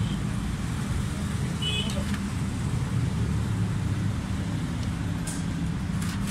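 Steady low rumble of motor vehicles running nearby, with a faint short metallic clink about two seconds in.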